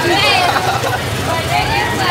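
A man's voice making wordless sounds, with a quick warbling high note near the start, over a steady rumble of street traffic.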